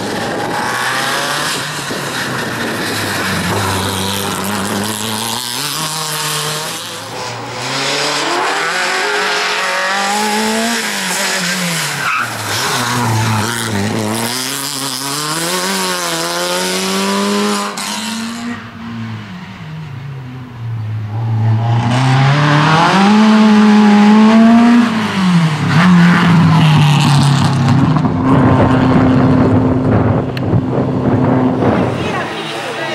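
Peugeot 205 rally car's four-cylinder engine at full throttle through a cone slalom, revving up and dropping back every couple of seconds as it lifts off, brakes and changes gear between the cones. It grows louder in the last third as the car comes close.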